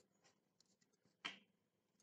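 Quiet handling noise: faint rustling and rubbing of cloth as the strips of a homemade mop head are gripped and bound to the stick. There is one brief sharp tap a little over a second in.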